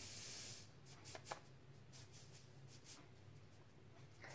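Salt pouring from a canister's spout into a small plastic measuring spoon: a short, faint hiss of trickling grains, then a few light clicks.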